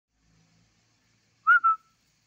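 A person whistles two short notes in quick succession about a second and a half in, the second note trailing off.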